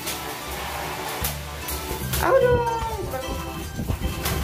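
Background music, with a macaw giving one short call about two seconds in that falls in pitch.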